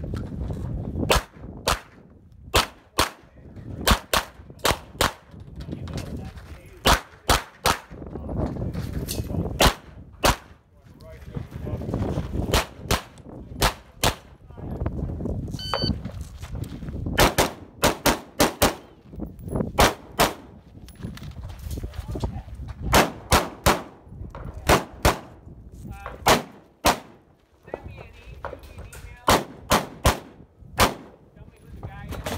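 Competition gunfire from a shotgun and an AR-15 rifle shooting at steel targets: dozens of sharp shots at irregular spacing, some in quick pairs and triplets, with a low rumble between them.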